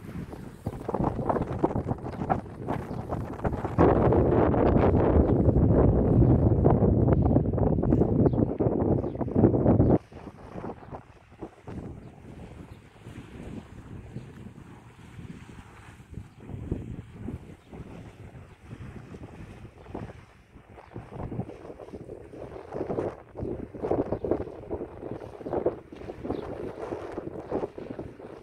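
Wind buffeting a phone's microphone: a heavy low rumble, loudest from about four seconds in, that cuts off suddenly about ten seconds in, followed by lighter gusts.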